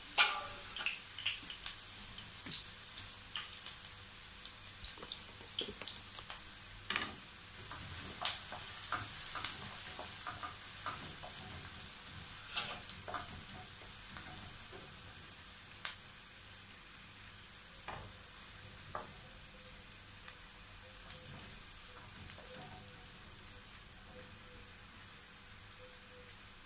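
Chopped onion frying in oil in a nonstick pan: a steady sizzle with scattered crackles and pops that thin out in the second half, while a wooden spoon stirs it.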